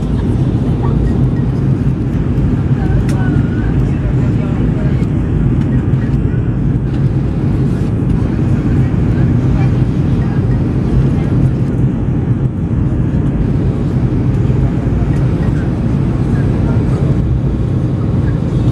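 Steady cabin rumble of an Airbus A320-family jet airliner on its landing approach, engine and airflow noise heard from a window seat over the wing, with faint passenger voices underneath.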